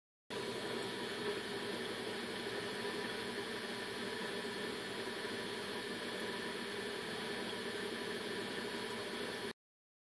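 A steady hiss with a faint high hum running through it, cutting in and out abruptly.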